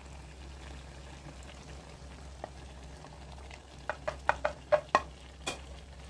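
A wok of chayote, chicken and shrimp in sauce cooking quietly over a low steady hum, then a quick run of sharp taps about four seconds in as chopped red bell pepper and onion drop into the pan.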